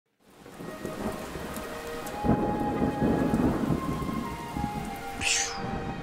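Storm sound effect: steady rain with rolling rumbles of thunder, fading in from silence, the heaviest rumble about two seconds in. Soft sustained music tones sit underneath, and a brief high hiss comes near the end.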